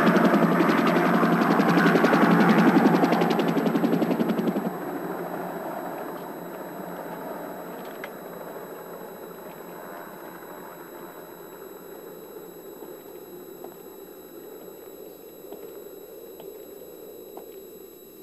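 Two-bladed Huey-type military helicopter flying low overhead, its rotor chopping in fast even pulses with the turbine whine under it. About four and a half seconds in the sound drops sharply, leaving only a faint steady hum that slowly fades.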